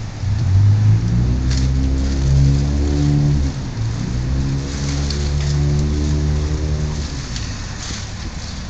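A dog chewing a cooked pork trotter on concrete, with a few sharp crunches of bone, over a loud low drone that rises and falls in pitch in two long swells.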